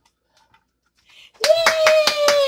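Near silence, then about one and a half seconds in a woman's drawn-out cheer breaks out over quick hand clapping, celebrating the candles being blown out.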